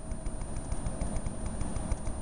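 Background noise of an old camcorder recording in a lecture room: a steady low rumble under a thin, steady high-pitched whine, with faint rapid ticking several times a second.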